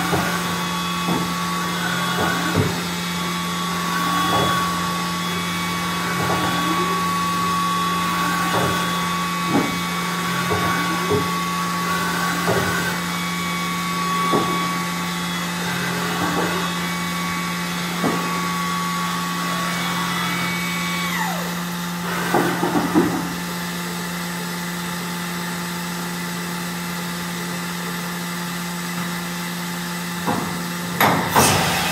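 OKK VB-53 vertical machining center running: a steady high spindle whine over a constant lower machine hum, with short rising-and-falling whirs every second or two. About two-thirds of the way through, the whine glides down and stops as the spindle slows, followed by a few knocks, and then only the steady hum is left.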